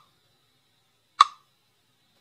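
Metronome count-in click: one sharp tick about a second in with a short ring, part of an even beat of roughly one tick every 1.4 seconds.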